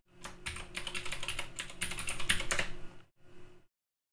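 Typing on a computer keyboard: a quick run of key clicks for about three seconds, a few more keystrokes just after, then the sound cuts off near the end.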